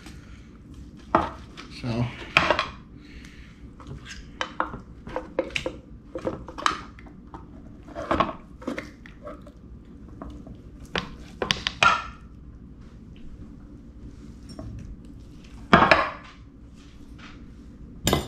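A metal fork scraping and clinking against a plate as cooked chicken is pulled apart, in short irregular clicks and scrapes, with one louder scrape near the end.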